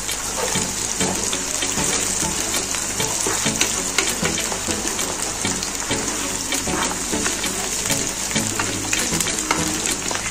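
Chicken leg pieces and sliced onions sizzling in hot oil in a kadhai, stirred with a wooden spatula. A steady sizzle with frequent small crackles and pops.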